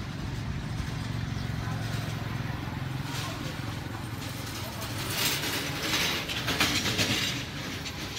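AGS D8 automatic boom barrier's electric gear motor running with a steady low hum as the arm swings down and back up. A louder, hissier noise rises over it about five seconds in and dies away before the end.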